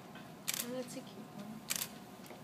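Two short, sharp clicks about a second apart, with a brief voice sound between them.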